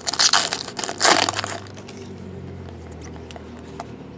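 Foil trading-card pack wrapper crinkling as it is torn open by hand: two loud crackling bursts in the first second and a half, then quieter handling.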